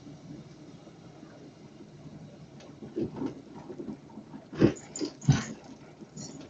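A dog barking several times in short, sharp calls, the loudest pair about two-thirds of the way through, over the low steady running of a car heard from inside its cabin.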